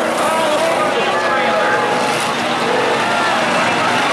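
Many race car engines running together on the track, a steady dense noise, under a grandstand crowd talking and calling out.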